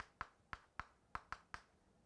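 Chalk tapping on a chalkboard as a few short strokes are written: about eight faint, sharp clicks.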